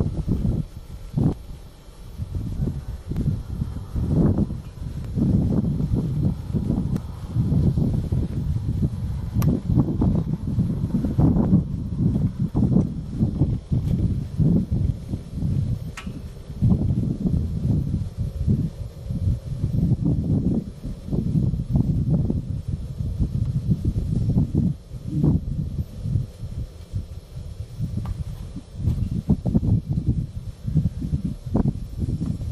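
Wind buffeting the microphone outdoors: an irregular, gusting low rumble that rises and falls throughout.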